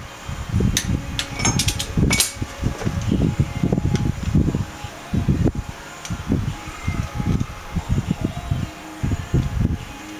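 Wind buffeting the microphone in uneven low gusts. A few sharp metallic clicks come in the first two seconds, from the torque wrench on the wheel bearing adjusting nut as it reaches 40 ft-lb.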